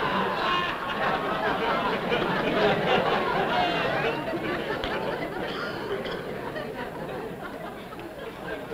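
Studio audience laughing, many voices at once. The laughter is loudest at the start and slowly dies down.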